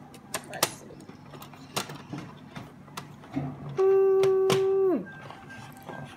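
Plastic clicks and taps from a toy truck hauler being handled on a table. About four seconds in comes a child's steady hummed "mmm" lasting about a second, dropping in pitch at the end.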